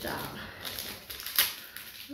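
Crinkling and crackling of a plastic medical supply wrapper being handled and opened, with one sharp snap about one and a half seconds in.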